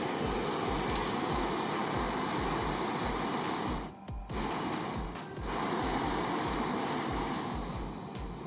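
Small camping gas stove burner hissing steadily after ignition, the hiss dropping away briefly twice, about four and five seconds in, while the valve is worked.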